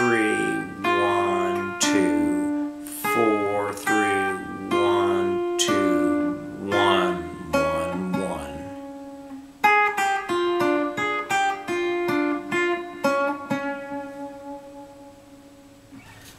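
Archtop electric guitar played clean through an amp, picking out a bossa nova lead phrase. Slower, fuller notes with low bass tones in the first half give way to a quicker run of single notes about ten seconds in, fading near the end.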